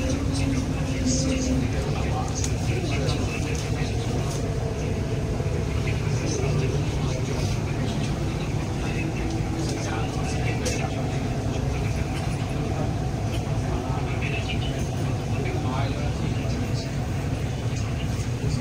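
Interior of an MTR East Rail Line R-train carriage: the train running slowly alongside a station platform, a steady low rumble of running gear, with faint voices in the background.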